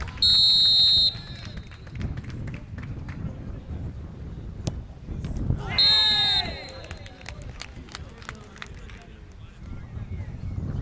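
A referee's whistle blows once, a steady shrill tone lasting about a second, signalling the penalty kick. About five seconds later comes the thud of the ball being struck, then a second short whistle blast over shouting voices, followed by scattered claps.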